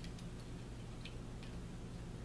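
A few faint, light clicks, about three in two seconds, over a steady low hum.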